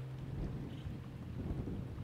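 Background music fading out at the start, leaving a low, uneven rumble of background noise.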